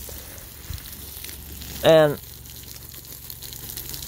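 Garden hose spray nozzle watering soil and plants: a steady hiss of falling water spray.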